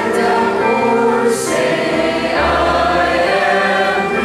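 Church congregation singing a hymn together, holding notes that change every second or so, with a brief sung 's' about a second in.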